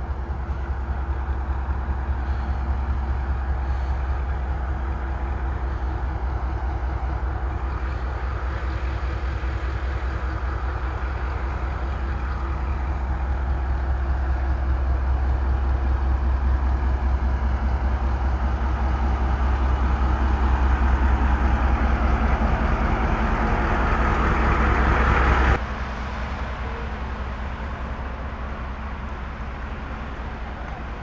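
Pakistan Railways ZCU-30 diesel-electric locomotive idling at a standstill: a steady low rumble with a fast, even pulse and a hiss above it. It grows gradually louder, then drops abruptly near the end.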